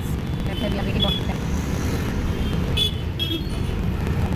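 Steady low rumble of a Tempo Traveller minibus's engine and the surrounding road traffic, heard from inside the cabin through an open door. A few brief high beeps sound over it.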